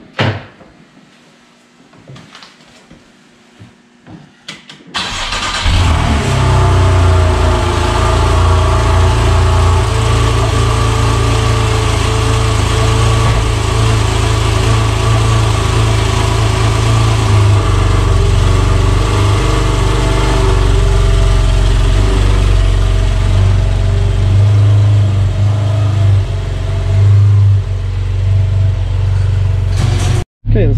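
Cold start of a 2015 Porsche 911 Carrera 4S (991.1) 3.8-litre naturally aspirated flat-six: after a few quiet clicks, the engine catches about five seconds in with a loud flare of revs, then settles into a steady idle.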